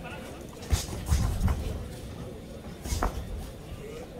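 Boxing gloves landing punches: sharp thuds, one under a second in, a quick flurry about a second later and another near three seconds, over shouting in the background.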